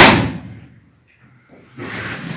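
A single sharp lash striking, one loud crack that dies away over about half a second, given as a parent's traditional whipping punishment.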